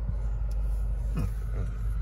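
Low, steady rumble of a car idling, heard from inside the car.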